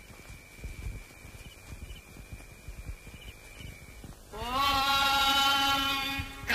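Film soundtrack: a faint steady high tone over a low rumble, then about four seconds in a loud held note that rises slightly at its start and then holds, opening a chant-like music cue.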